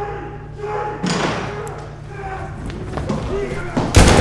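A heavy thud about a second in and a louder slam near the end, over a man's raised voice and a steady low hum.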